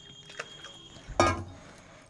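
Quiet room noise with one short knock about a second in, from a small steel cup of hot water being handled over a steel tray.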